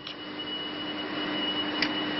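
Steady hum and hiss of running factory machinery, with a constant low hum and a thin high whine, getting slightly louder over the two seconds. A brief click near the end.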